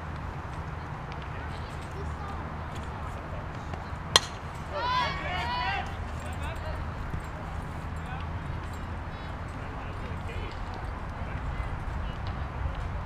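A softball bat strikes a pitched ball once with a sharp crack about four seconds in, likely fouled off. Short rising-and-falling yells from players follow about a second later, over steady low background noise.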